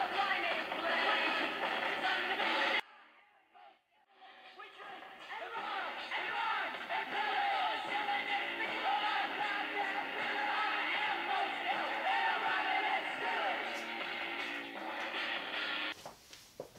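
Cassette-playing ALF talking doll playing a tape through its small built-in speaker: music with a voice singing and talking along. The sound cuts out abruptly about three seconds in and returns a second or two later.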